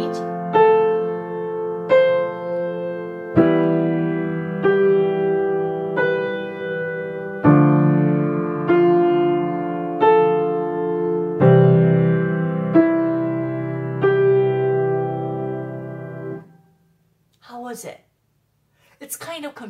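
Piano playing a slow 3/4 pedal exercise, one note about every 1.3 seconds: a left-hand chord at the start of each bar under a rising three-note broken chord in the right hand. The sustain pedal is changed at each new bar, so each bar's notes ring together without blurring into the next. The final chord rings out and fades away near the end.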